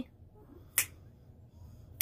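A single sharp finger snap a little under a second in, in a small quiet room.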